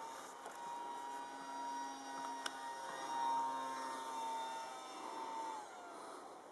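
Small brushless electric motor of an RC flying wing (2208, 1800 kV) spinning a 7x4 folding propeller: a steady high whine. Its pitch falls away near the end as the motor winds down. A single sharp click about halfway through.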